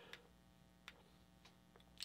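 Near silence: faint room tone with a few faint, short clicks.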